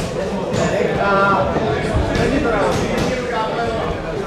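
Voices shouting around a boxing ring during a bout, with a few sharp knocks of boxing gloves landing in between.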